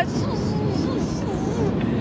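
Steady road and engine noise inside a moving car's cabin, with faint talking over it.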